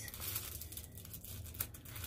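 Plastic packaging bag crinkling and rustling as it is handled, with scattered faint ticks and one slightly sharper crackle about one and a half seconds in.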